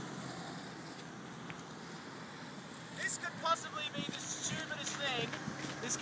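A car engine idling with a low steady hum, and from about three seconds in, people talking over it.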